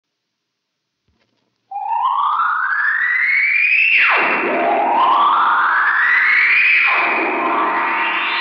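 Electronic opening sound effect of a science-fiction radio program. After about a second and a half of silence, two rising swoops each climb for a couple of seconds and then drop sharply, followed near the end by a held chord.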